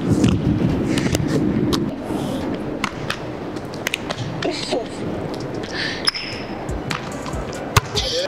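Basketballs bouncing and thudding on a hardwood gym floor, a scattered series of sharp thuds with one especially loud thud near the end.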